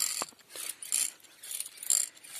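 Hand-pumped knapsack sprayer being worked: rhythmic mechanical clicking with short hissing strokes, about one every half second to second.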